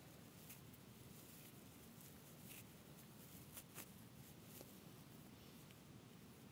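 Near silence, with faint scattered crackles of dry tulip tree bark fibres being pulled apart by hand, a few soft ticks a second or so apart.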